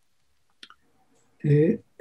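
A pause in a man's speech, near silent apart from one faint click a little over a quarter of the way in, then he says a hesitant 'uh' near the end.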